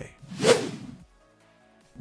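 A whoosh transition sound effect that swells to a peak about half a second in and fades out within the first second.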